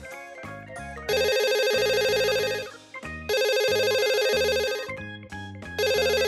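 A phone ringtone sounds three times, each ring about a second and a half long with a fast trilling pulse, over light background music.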